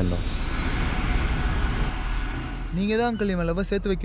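Jet airliner in flight: a steady rush of engine noise with a faint high whine, giving way to speech near the end.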